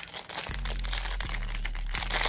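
Clear plastic packaging bag crinkling as it is handled and opened, in a quick irregular run of crackles.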